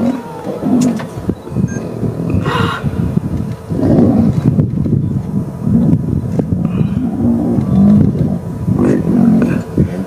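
Two male lions growling as they fight, a dense, continuous run of low growls.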